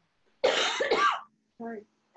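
A woman coughs twice in quick succession into her hand, about half a second in.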